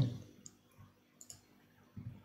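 A few faint computer mouse clicks: one about half a second in, two close together just past a second, and one more near the end.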